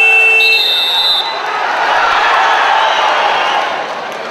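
A wrestling timekeeper's electronic buzzer sounds loudly and cuts off about a second in, marking the end of a period of wrestling. Arena crowd noise swells after it and then eases.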